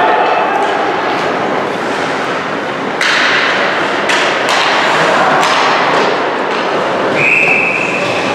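Ice hockey play: sharp clacks and bangs of sticks, puck and bodies against the boards, the loudest a sudden crack about three seconds in. Near the end a referee's whistle sounds once, a steady blast just under a second long, with the goalie covering the puck to stop play.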